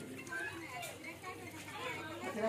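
Faint background voices of several people talking, quieter than the nearby speech.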